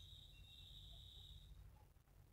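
Near silence: room tone, with a faint steady high-pitched tone that stops about one and a half seconds in.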